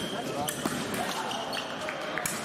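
Fencers' shoes tapping and thudding on the piste during sabre footwork, a handful of sharp taps, over a background of voices echoing in a large hall.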